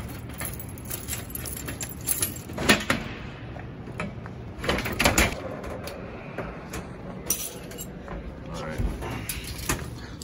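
Keys jangling on a keyring as a key is turned in the lock of a Key Master arcade cabinet and its metal door is swung open, giving a few sharp clicks and knocks, the loudest about three and five seconds in.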